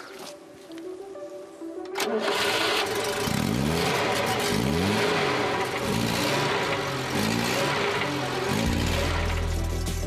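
A Renault 4's four-cylinder engine starting about two seconds in, then revved up and down several times, with a deep low rumble near the end.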